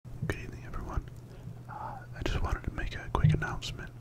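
A man whispering close into a microphone, with small sharp clicks between the words.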